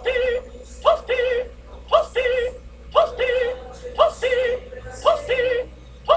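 A synthetic, voice-like warbling sound on a loop, repeating about once a second: a quick upward yelp followed by a wavering held note.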